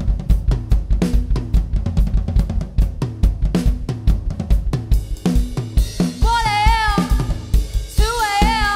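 Rock drum kit played hard in a fast break, with rapid snare, kick and cymbal hits while the rest of the band drops out. About five seconds in, other instruments come back in with held, wavering notes over the drums.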